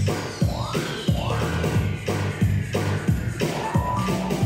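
Electronic pop backing track in an instrumental passage, with no singing: a steady beat over a bass line and a long high synth tone gliding down in pitch.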